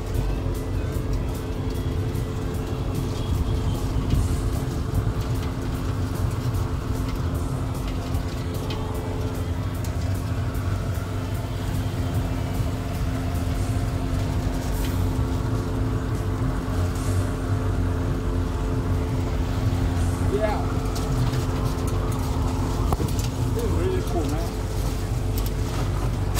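A homemade open car with no windshield being driven along a street: a steady drone from its drivetrain over a low rumble of wind and road on the microphone. Faint voices come in near the end.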